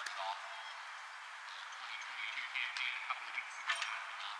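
Distant, indistinct voices over a steady outdoor background hiss, with a short cluster of sharp clicks near the end.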